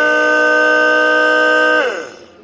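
Small 12 V DC diesel transfer pump motor running with a steady whine, then falling in pitch as it winds down just before the end.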